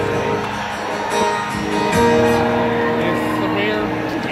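Live band playing a slow country ballad through a concert PA, with held chords and acoustic guitar. A voice comes in near the end.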